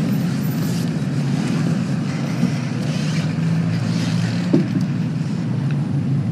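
Steady low rumble of city street traffic, a continuous hum with no clear breaks.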